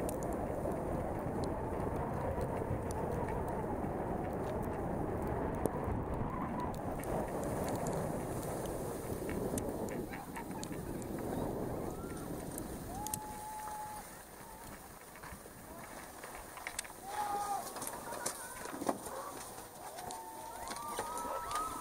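Wind rushing over the microphone of a helmet camera, with the hiss of skis on snow, during a run downhill. The noise dies away about fourteen seconds in as the skier slows, leaving a few short pitched tones.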